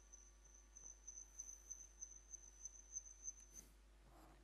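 Near silence, with a faint, steady high-pitched electronic whine from the audio playback system that pulses slightly and cuts off with a soft click about three and a half seconds in.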